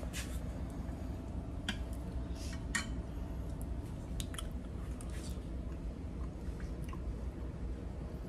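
A man eating a spoonful of soft vegan mac and cheese: a few light clicks of a metal spoon, then quiet chewing. A steady low hum runs underneath.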